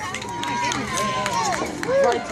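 Spectators and players shouting and calling out during a soccer game, several voices overlapping without clear words, one of them holding a long call in the first half.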